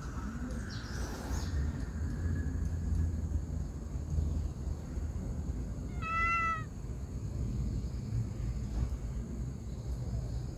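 A cat hisses near the start, then a single short meow comes about six seconds in, over a steady low outdoor rumble.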